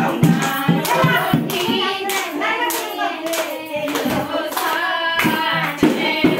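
Several people clapping their hands in a steady rhythm along with singing.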